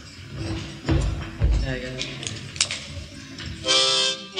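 Acoustic guitar being handled and strummed, with two heavy low thumps, then a loud harmonica chord near the end as a song starts.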